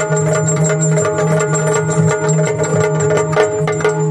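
Yakshagana accompaniment without singing: a maddale barrel drum played in a quick, busy rhythm over a steady drone.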